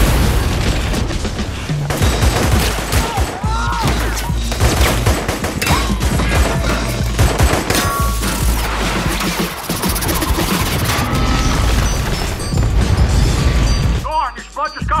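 Film battle sound: a loud explosion at the start, then dense rapid gunfire and further blasts, over a music score.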